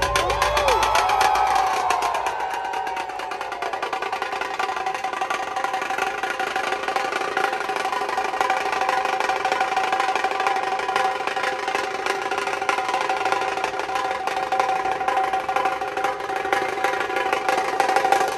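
Dhol-tasha troupe drumming: the tashas play a fast, continuous roll with a steady ringing pitch. The deep dhol beats fade out about two seconds in.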